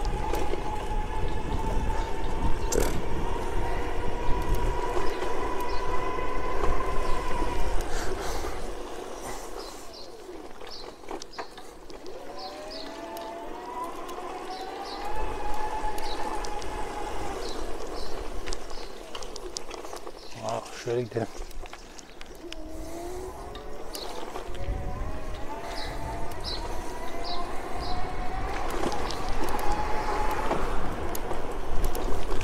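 Electric bike hub motor whining under pedal assist on assist level 10, its pitch climbing slowly as the bike gathers speed, three times, quieter between pushes. Wind rumbles on the microphone throughout, with a few knocks about twenty seconds in.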